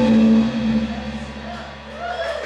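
Live band of electric guitar, electric bass, drum kit and saxophone ending a song: the final chord is held for about half a second, then drops away and rings out, fading, with a low bass note sustaining underneath.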